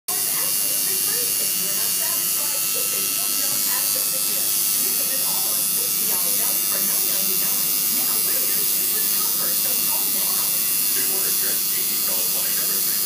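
Electric tattoo machine buzzing steadily as its needle works ink into the skin of an upper arm. Voices murmur underneath.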